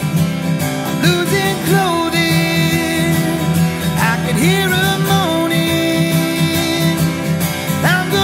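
Acoustic guitar strummed steadily, with a man's voice singing long, gliding notes over it, but no clear words.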